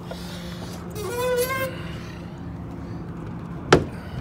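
Freightliner Cascadia's hood being pulled open from the front: a brief squeak about a second in, then one sharp clunk near the end as the hood lets go and swings forward. A steady low engine hum runs underneath.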